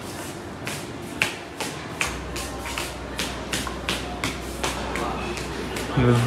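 Footsteps in slippers on a hard, smooth floor: a steady walking rhythm of about two to three short slaps a second. A low steady hum comes in about two seconds in.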